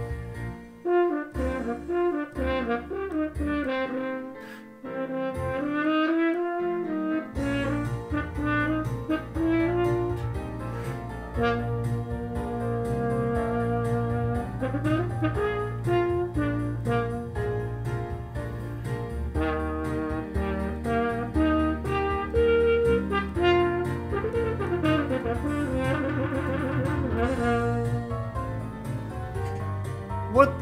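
A French horn playing a melodic practice passage with a mute in the bell, over a recorded backing track. The track's steady bass line comes in about seven seconds in.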